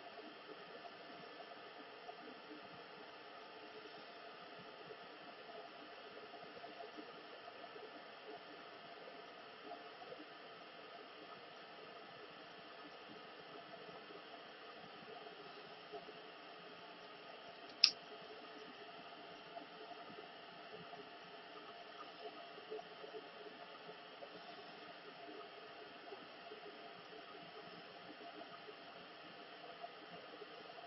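Faint steady hiss of background noise, with a single sharp click about two-thirds of the way through.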